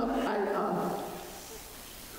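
A woman's voice over a microphone, drawn out and trailing off about a second in, leaving quiet room tone.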